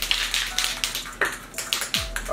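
Spray paint can being shaken: the mixing ball inside rattles in a quick run of sharp clicks, several a second.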